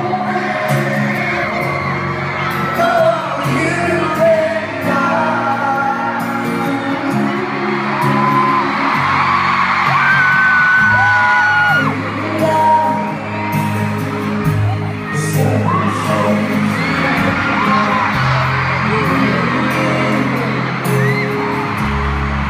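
Live pop ballad performance of a band and a singer holding long sung notes, heard from far back in a stadium, with the crowd's screams and whoops mixed in.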